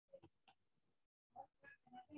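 Near silence: a very faint, muffled voice over a video-call connection, cutting in and out in short fragments.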